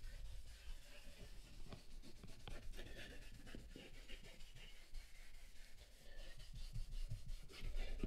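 A leather brush scrubbing a foam-covered leather car seat: faint, irregular scratching and rubbing strokes as the leather cleaner is agitated into the leather.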